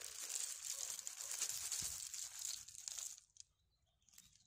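In-shell pistachios pouring from a plastic snack bag onto a flat wooden woomera: a dense rattle of shells on wood with the bag crinkling, tailing off about three seconds in.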